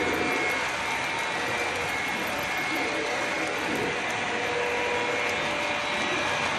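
Model train freight cars rolling along the track, a steady even whir of wheels and motor with faint steady tones in it.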